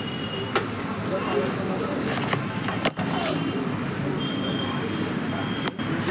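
A few sharp clicks from a plastic magnetic pencil box being handled, over a steady background hum. A brief high steady tone sounds about two-thirds of the way through.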